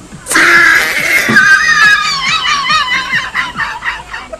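A woman's loud, high-pitched shriek close to the microphone, breaking into rapid pulses of laughter toward the end, with dance music playing faintly underneath.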